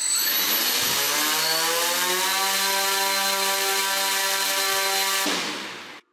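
Hexacopter's six brushless motors, props flipped over, spinning up under load for a compassmot interference test: a whine rising in pitch over about two seconds, held steady at full throttle, then throttled back quickly and fading near the end.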